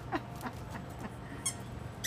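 A squeaky toy ball squeaking as a dog mouths it, with short falling squeaks about three a second that fade away, and a faint click about one and a half seconds in.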